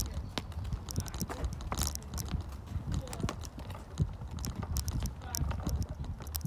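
Wheelchair being pushed outdoors, with irregular clicks and knocks from its wheels and frame over a low rolling rumble.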